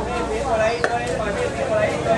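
Metal tongs clicking against steel trays and a plastic bowl as donuts are handled, one sharp click about a second in and a fainter one near the end, over a background of voices.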